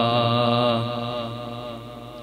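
A man's voice holding the last note of a chanted Arabic salawat (blessing on the Prophet), one steady pitch that slowly fades away.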